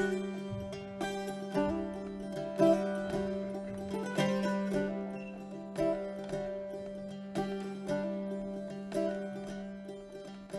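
Hurdy-gurdy playing a folk melody over its steady low drone, with a plucked string instrument strumming chords, a strong strum about every second and a half.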